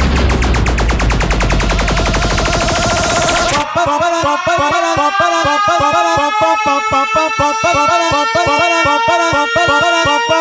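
Electronic dance music from a DJ mix: a very fast stuttering drum roll over heavy bass, which cuts out about a third of the way in, leaving a repeating melodic synth figure over a held note with no bass.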